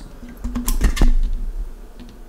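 A few sharp clicks and knocks about half a second to a second in, over the low rumble of a handheld camera being moved.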